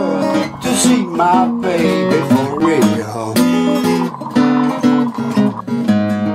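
Acoustic blues guitar playing on the soundtrack, finishing on a strummed chord left to ring near the end.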